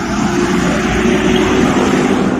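Road traffic going past: cars and motorcycles on a busy highway, a steady noise of engines and tyres.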